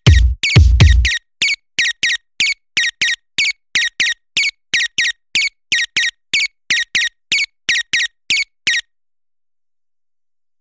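End of an electronic music track: a short, high squeaky sound repeats about two and a half times a second. The heavy bass kick drops out about a second in, and the squeaks stop near the end.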